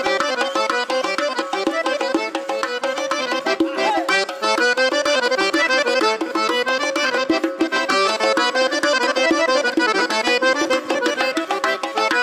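Live Uzbek folk-pop band playing an instrumental dance passage with a fast, steady beat and a busy melody.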